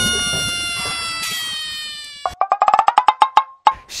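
Edited-in transition sound effects: a shimmering chime-like tone that falls slowly and fades over about two seconds, then a quick run of pitched wood-block-like ticks, about ten a second, for over a second.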